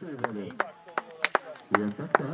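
Irregular sharp knocks, a few a second, under faint voices.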